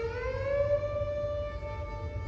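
Solo violin playing a long bowed note that slides up in pitch over about half a second and then holds, moving to a new note near the end.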